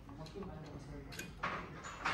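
Light handling of the metal beam apparatus as it is adjusted: a small click a little over a second in, then a short scraping rustle. Faint voices run underneath.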